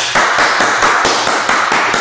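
Rapid, loud run of hand claps, about six or seven a second, in an excited reaction.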